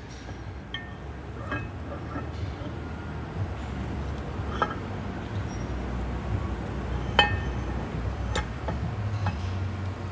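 A handful of light metallic clinks and taps as the steel shaft and its bearing are slid into the cast gearbox housing of an Atlas Copco MD dryer gearbox, going in as a smooth fit. The clinks are spread over several seconds, with the sharpest a little past halfway, over a low steady hum.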